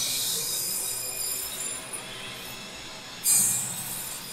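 Sound effects from an anime soundtrack: a steady hissing rush, with a sudden louder swell about three seconds in.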